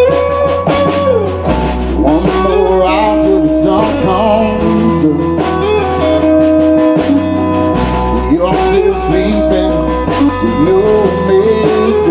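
Live country band playing an instrumental passage: strummed acoustic guitar and electric guitar over upright bass, with a melody line whose notes bend up and down in pitch.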